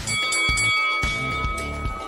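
A single bright bell-like chime struck once and ringing on for about a second and a half, over background music: a quiz sound effect marking that the countdown has run out.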